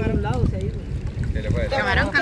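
Water sloshing and splashing around people wading waist-deep while handling a mesh fishing net, under a low rumble of wind on the microphone. Voices talk over it near the start and again near the end.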